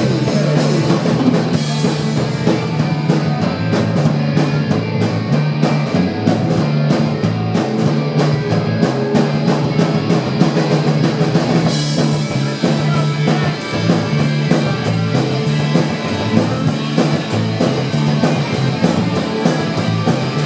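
Live rock band playing an instrumental passage: electric guitar, electric bass and drum kit, with a repeating bass line under a steady, evenly spaced drum beat.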